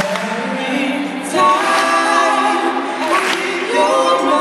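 A small vocal group singing live in harmony, several voices holding and bending notes together, with new phrases coming in about a second in and again near the end.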